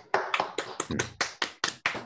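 A throat clear, then one person clapping, about five claps a second, picked up through a video-call microphone.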